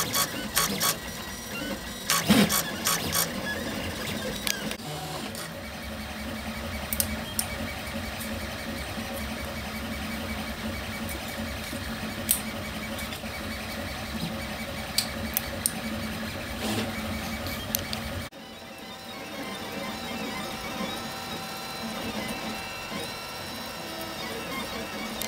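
Velleman K8200 3D printer printing: its stepper motors whir and buzz steadily as the print head and bed move, with a few sharp clicks in the first few seconds. About three-quarters of the way through, the sound cuts abruptly to a quieter stretch of thin, steady motor tones.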